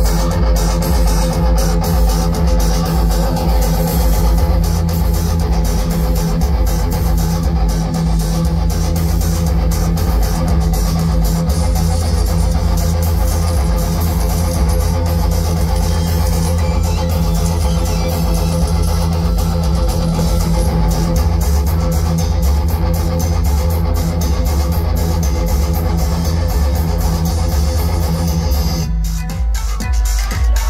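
A rock band playing live through a PA, heard from within the crowd: electric guitars, bass and drums play steadily. There is a brief break just before the end.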